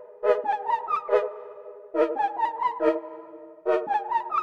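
Software synthesizer (Analog Lab V) playing a simple melody over held chords: a short repeating run of bright, sharply attacked notes above sustained chord tones, with the chord changing about halfway through. It is a deliberately simplified melody built from chord notes.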